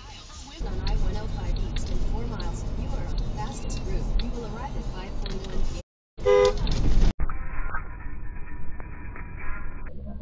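A car horn sounds once for about a second, about six seconds in, the loudest thing here, over steady road and engine noise heard from inside a car.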